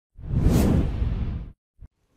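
A whoosh transition sound effect: one noise sweep lasting about a second and a half, followed by a brief click just before the end.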